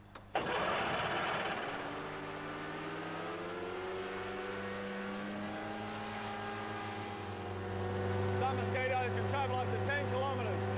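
Hovercraft engine started at the panel and catching about half a second in, then running steadily, its pitch rising as it revs up. It gets louder near the end.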